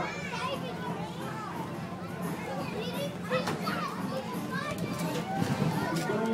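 Many children's voices calling and shouting as they play, over a steady low hum.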